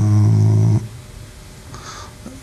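A man's voice holding a drawn-out hesitation sound, "э-э", at one steady low pitch for just under a second.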